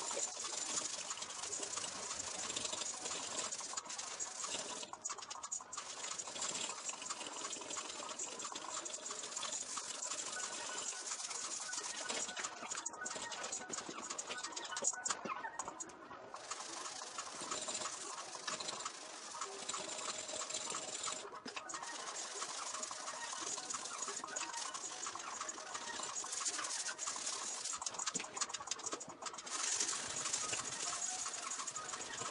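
Sandpaper rasping by hand over a primed Mazda RX-7 bumper in a continuous scratchy hiss, with a few brief pauses as the strokes stop and restart.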